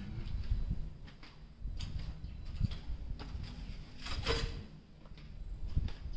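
Footsteps on a bare concrete hallway floor with camera-handling rumble, as the person walks along. There are irregular knocks and clicks, the sharpest a little after four seconds in.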